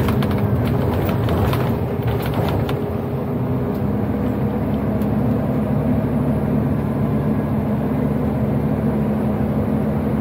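Acco garbage truck's diesel engine running steadily at road speed with tyre and road noise, heard inside the cab. There are a few light rattles or clicks in the first three seconds.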